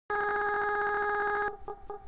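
Telephone-bell-like electronic ringtone: several steady pitches with a fast trill, held for about a second and a half, then breaking into quieter short pips about five a second.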